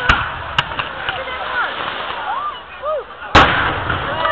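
Firework display: aerial shells bursting with sharp bangs, one at the start, another about half a second in, and the loudest a little over three seconds in.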